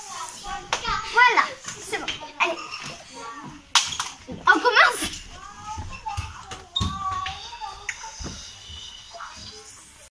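Children's voices crying out and exclaiming, no clear words, two of the cries sliding up and down in pitch, with a couple of short knocks.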